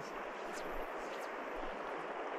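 Steady hiss of a shallow river flowing over stones.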